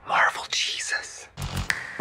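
A man's voice speaking softly, close to a whisper, with no music behind it.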